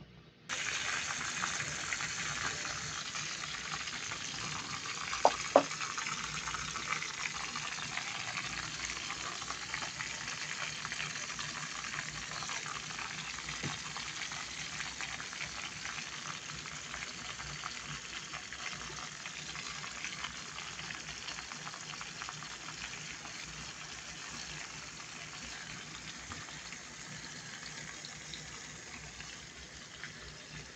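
Onions frying in hot oil in an aluminium wok, a steady sizzle that starts suddenly about half a second in and slowly grows quieter. Two sharp clicks stand out about five seconds in.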